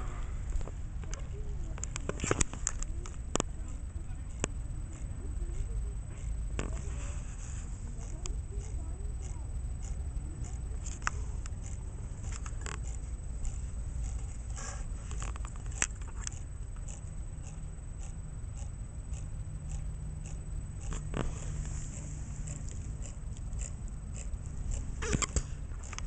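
Tiny pager motor of a solar-powered vibrobot giving short, irregular twitches every second or few seconds as its capacitor discharges, heard as faint clicks over a steady low outdoor rumble.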